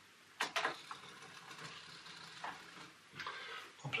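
Automatic roller door on a model railway engine shed closing under DCC control: two sharp clicks about half a second in, then a faint mechanical whirr with a few soft ticks as the door runs down.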